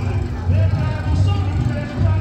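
People talking close by over a strong, pulsing low rumble.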